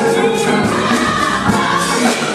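A large gospel choir singing full-voiced with instrumental accompaniment, the sound continuous and loud.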